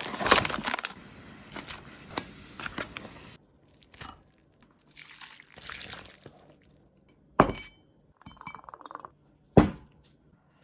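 Plastic sachets rustling and crinkling as they are pulled out of a cardboard instant-noodle box, followed by scattered clatter of food prep in a stone bowl and two sharp knocks or clinks near the end.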